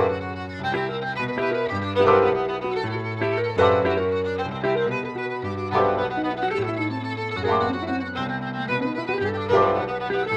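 Live chamber music: a violin plays a slow melody over piano chords struck about every two seconds. In the second half the violin slides between notes.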